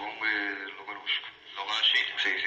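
Speech only: a voice talking in short phrases, on an old recording with a narrow, radio-like sound.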